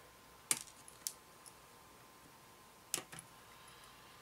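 Sprue cutters snipping plastic kit parts off a polystyrene sprue: three sharp clicks, about half a second in, about a second in and about three seconds in, the last followed by a couple of smaller ticks.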